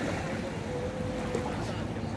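Steady sea-water wash at a beach, with wind noise on the microphone and faint distant voices.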